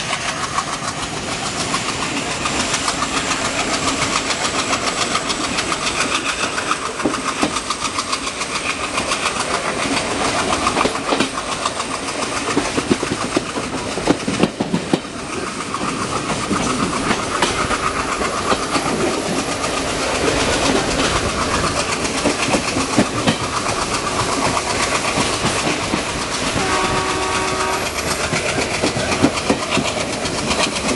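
Passenger train coaches rolling at speed, wheels clattering steadily over the rail joints, heard from an open coach door. Near the end a locomotive's multi-tone horn sounds once, briefly.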